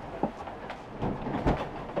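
Inside the cabin of a Fountaine Pajot sailing catamaran beating into head seas: a run of knocks and rattles from the hull and fittings as the bows bash into the waves, over a steady rush of water. The loudest knock comes about one and a half seconds in.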